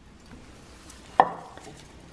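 Hands kneading marzipan with ground pistachios in a ceramic bowl, with one sharp knock against the bowl a little over a second in.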